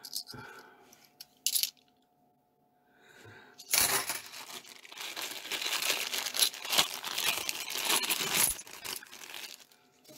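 Clear plastic coin bag crinkling and £2 coins clinking as a hand rummages for more coins, a dense rustle lasting about six seconds from a little under four seconds in. A single brief click comes about a second and a half in.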